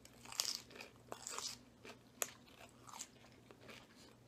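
Faint, irregular crunching of Caesar salad being chewed: romaine lettuce and croutons breaking between the teeth, with one sharp click a little past two seconds in.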